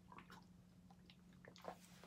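Near silence with faint swallowing and mouth clicks from someone drinking a shake from a plastic shaker bottle, over a steady low hum.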